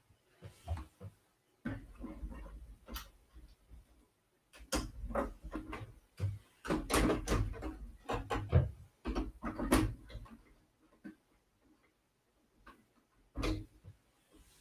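LEGO pieces and a large LEGO model being handled on a table: plastic clatter, clicks and knocks in several bursts with quiet gaps between.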